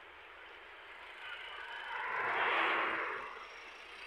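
A vehicle passing close by on the road, its noise swelling over about a second and a half and fading away again.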